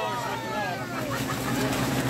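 A steady low hum from the refrigeration equipment that chills a minus-40 cold room, under faint voices and a short laugh at the start.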